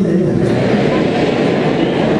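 Many voices of a congregation speaking at once, a steady mass of crowd sound.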